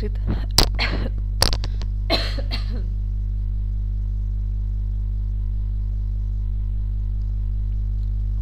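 A woman clearing her tickling throat, two short rough bursts with sharp clicks in the first three seconds, over a steady electrical hum that runs on alone afterwards.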